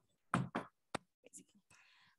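Chalk on a blackboard while writing: three sharp taps in the first second, then a few fainter ticks and a light scratch.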